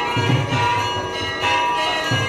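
Music with many bells ringing together and low beats underneath.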